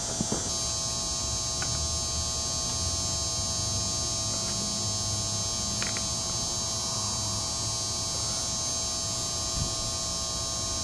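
A steady hum with a high, even whine over a low rumble, unchanging in level, with a couple of faint clicks.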